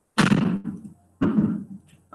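Two short coughs about a second apart, each starting sharply and trailing off.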